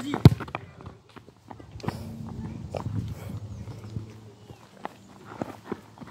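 A football kicked hard once just after the start, followed by running footsteps and shoe scuffs on a sandy dirt path, with scattered light knocks of the ball.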